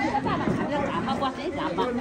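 Indistinct chatter: people talking close by, voices overlapping.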